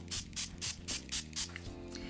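Fine-mist pump spray bottle of pearl-shimmer water spritzing onto a craft mat in quick repeated squirts, about four hisses a second, over faint background music.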